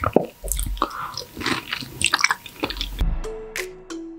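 Close-miked eating of soft, ripe mango flesh: wet, squishy bites, sucking and chewing in irregular bursts. About three seconds in this gives way suddenly to electronic intro music with steady held notes and bass.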